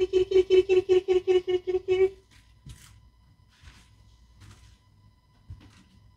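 A woman calling a cat with a rapid, repeated 'kitty kitty kitty' on one steady pitch, stopping about two seconds in. Faint knocks and rustles follow.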